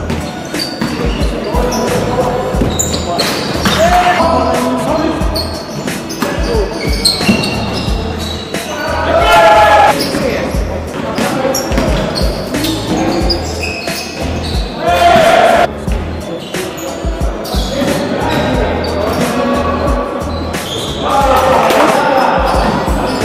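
Live sound of an indoor basketball game in a large hall: a ball bouncing on the wooden floor with many sharp knocks, players calling out, and everything echoing in the hall.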